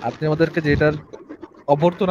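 A man's voice making drawn-out, level-pitched vocal sounds that the recogniser did not catch as words: one stretch in the first second and another starting near the end.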